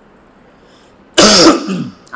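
A man clearing his throat once, about a second in, close to a headset microphone and loud enough to overload it.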